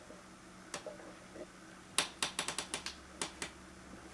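A quick run of sharp clicks, about eight within a second, starting about two seconds in, with a few fainter single ticks before and after.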